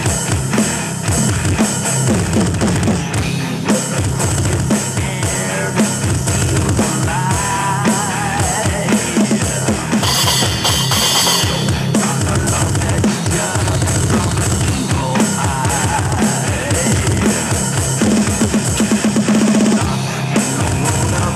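Heavy metal song playing with a drum kit played along to it: a fast, continuous bass drum, snare and cymbals under the band. A wavering lead line runs through the middle, with a bright burst of high sound for a second or two about halfway.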